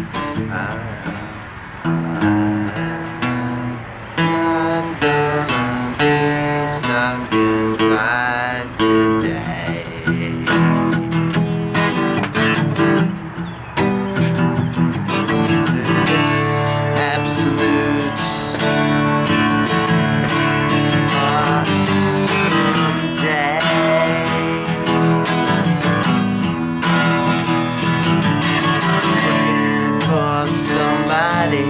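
Solo acoustic guitar strummed in chords, the instrumental opening of a song. The strumming is uneven at first and becomes fuller and steadier about halfway through.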